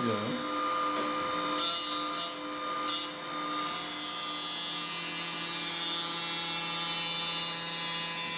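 MRS Ettrich SBR900 reel grinding machine running with a steady hum, its thin grinding wheel grinding the steel bedknife of a reel mower cutting unit. Two short bursts of grinding come in the first few seconds, then continuous grinding from about three and a half seconds in, throwing sparks.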